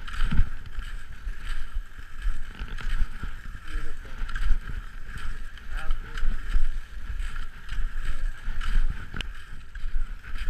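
Cross-country skate skiing on groomed snow: skis scraping and poles planting in a steady stroke rhythm, a surge a little more than once a second, with wind rumbling on the camera microphone.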